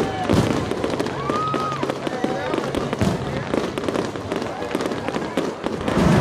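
Aerial fireworks bursting over water: a dense run of sharp bangs and crackles, with people's voices underneath and a brief high whistle about a second in.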